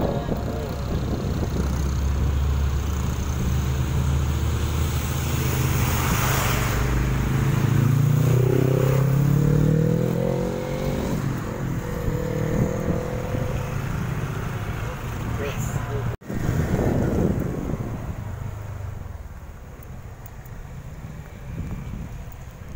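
Engine and road noise from a moving vehicle on wet asphalt. The engine note rises as it speeds up about eight seconds in. The sound cuts out for an instant about two thirds through and is quieter after.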